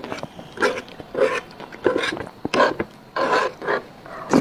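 Close-miked mouth sounds of eating: a run of wet chewing and sucking noises, about six in the space of four seconds.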